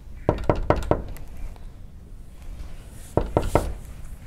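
Knocking on a door: four quick raps, then after a pause three more raps near the end.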